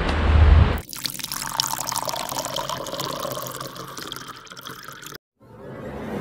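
Wind buffeting the microphone, then, after an abrupt change about a second in, a trickling, splashing sound of running water. The water fades down over about four seconds and cuts off sharply, and a rising whoosh starts near the end.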